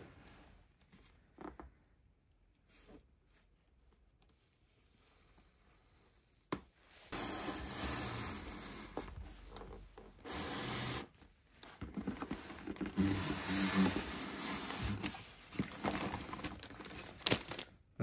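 Plastic packaging crinkling, rustling and tearing as a new RC truck is unpacked from its box. Almost quiet apart from a few faint clicks for the first several seconds, then continuous irregular handling noise from about seven seconds in.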